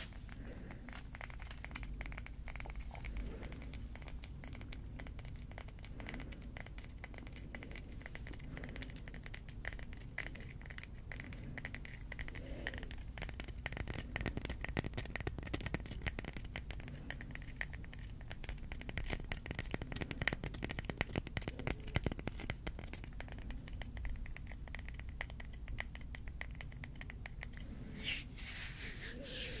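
Long fingernails scratching and tapping over a small smooth stone close to the microphone, a dense run of fine scratches and clicks.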